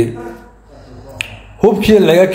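A man's speech trails off into a short pause broken by a single sharp click, then his speech starts again.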